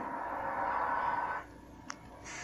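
Cartoon soundtrack playing from a television speaker: a steady noisy rush that stops suddenly about one and a half seconds in, followed by a single click.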